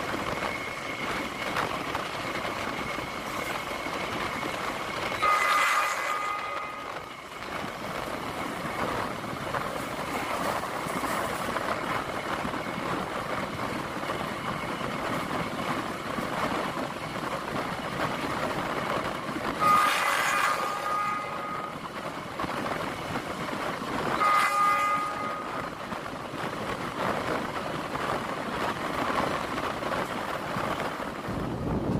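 Argo Bromo Anggrek express train running at speed, with a steady rush of wheel and wind noise. The train's horn sounds three times: about five seconds in, at about twenty seconds and at about twenty-four seconds.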